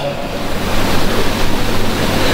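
Steady background room noise: an even hiss with a low, constant hum underneath.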